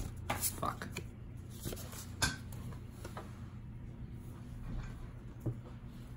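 Lobby cards being handled and sorted by hand: light clicks, taps and rustles of card stock, with a sharper tap about two seconds in. A steady low hum runs underneath.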